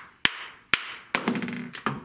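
A hammer knocking a vintage wooden router plane (hag's tooth) several times, sharp raps roughly half a second apart, to loosen its wedge and free the chisel-like cutter. A brief clatter near the end is the loosened iron and wedge coming out.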